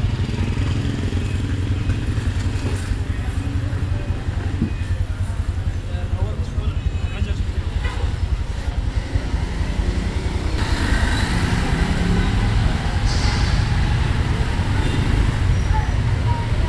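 A motor vehicle engine idling close by, a steady, pulsing low rumble, with a vehicle's noise growing louder and harsher about ten seconds in.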